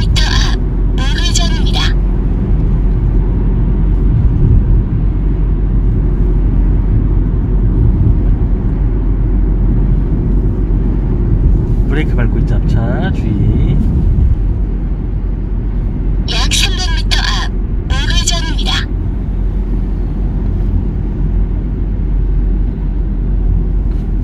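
Steady low engine and tyre rumble of a Hyundai car heard from inside the cabin while driving.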